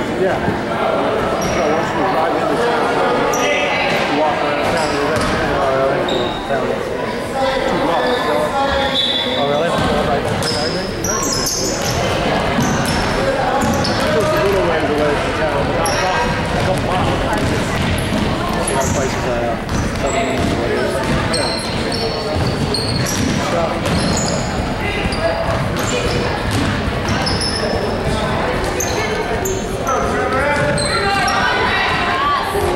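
Basketball game in a gym: the ball bouncing on the hardwood floor and sneakers squeaking as players run, over steady indistinct chatter of spectators' voices echoing in the hall.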